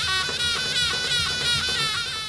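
Zurna (Turkish folk shawm) playing a high, wavering melody over a davul drum beat: the wedding music of a passing procession.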